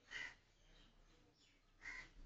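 Near silence broken by two short, faint bird calls, one just after the start and one near the end, about a second and a half apart.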